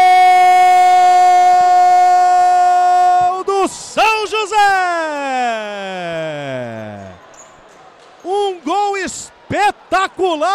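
Commentator's drawn-out goal cry: one long shouted note held at a steady pitch for about three seconds, then a few shouted syllables and a long slide down in pitch, with more short shouted words near the end.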